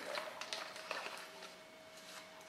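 Faint clicks and soft rustling of black card stock being handled at a sliding paper trimmer and lifted out for folding.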